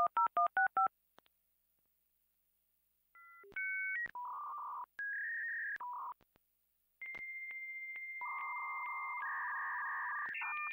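Dial-up modem connecting. The last touch-tone digits beep in the first second, then after about two seconds of silence the modem handshake begins: short beeps, steady whistles and hissing screech tones that run on through the rest.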